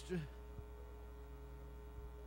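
Steady low electrical mains hum from the sound system, with a faint steady higher tone above it. A single faint click comes about half a second in.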